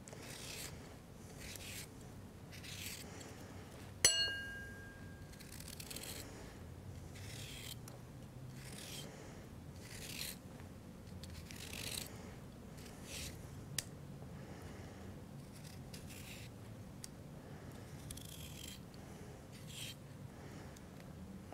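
Small curved turning knife shaving thin strips from a raw carrot: faint, short scraping strokes about every second. About four seconds in, a single sharp click with a brief ringing tone stands out as the loudest sound.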